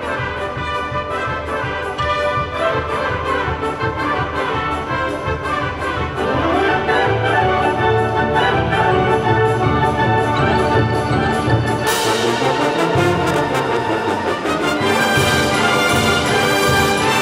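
Concert band playing, brass to the fore over a steady beat; the band grows louder about six seconds in, and a bright hiss of percussion joins about twelve seconds in.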